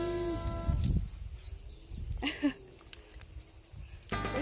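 Two Akita dogs play-wrestling, with low growling and one short, loud yelp a little over two seconds in.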